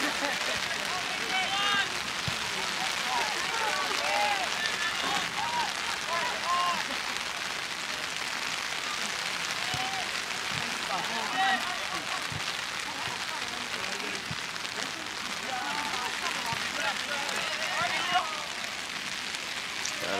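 Steady rain hiss, with faint distant shouts and calls scattered throughout.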